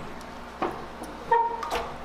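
Handling noises as things are moved on a table: a light knock about half a second in, then a sharper, louder knock with a short squeak-like tone after it, and another small tap near the end, over a faint steady hum.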